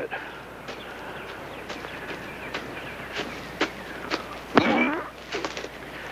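Footsteps in orchard grass: light, scattered clicks and rustles as a man walks slowly, with a brief sound of a man's voice about four and a half seconds in.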